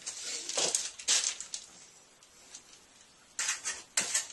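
Plastering trowel scraping lime-based Marble Stone Venetian plaster, a few short strokes with a quieter stretch in the middle.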